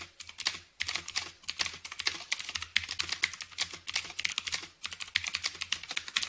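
Computer keyboard typing: a fast, continuous run of keystroke clicks with a brief gap just under a second in, over a faint low hum.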